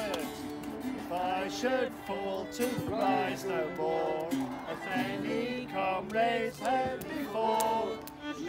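Group of voices singing a song together to strummed acoustic guitars.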